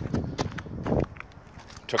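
Footsteps on rough asphalt: a few short scuffing steps in the first second, over a steady low hum.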